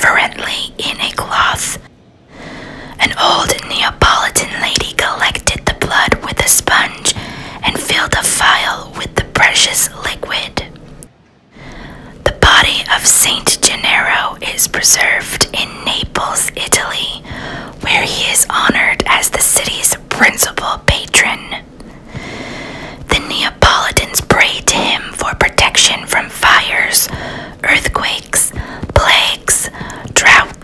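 A man whispering close to the microphone, talking almost without a break, with two short pauses about two and eleven seconds in.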